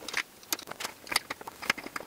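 Small irregular clicks and scrapes of a rubber bumper being worked onto a scooter frame's metal cowl clip with fingers and a small screwdriver.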